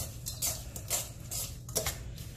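Metal tongs clinking against a stainless steel mixing bowl while tossing shredded coleslaw, with a sharp clink about every half second.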